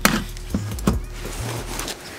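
A screwdriver prying at the plastic push-pin clips of an SUV's underbody panel: a sharp click at the start, then a few smaller clicks and scrapes.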